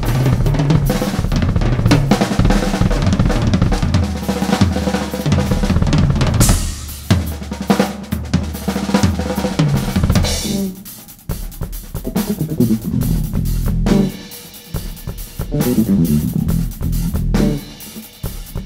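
A drum kit played live in a funk-rock band: fast, busy snare, bass drum and cymbal playing. About ten seconds in the hits thin out and low electric bass notes come through underneath.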